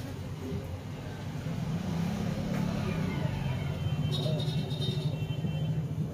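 Low road-traffic rumble that grows louder from about two seconds in as a vehicle engine passes. A short burst of high tones comes about four seconds in.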